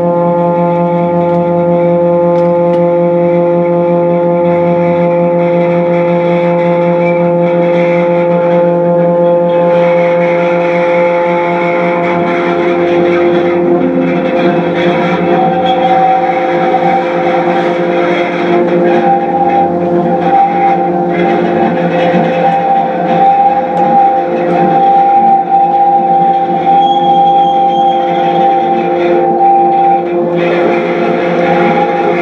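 Experimental noise drone from an electric guitar and effects pedals: a loud, continuous sound of several steady layered tones. About ten seconds in it turns grittier and noisier, and about halfway a higher steady tone enters and is held.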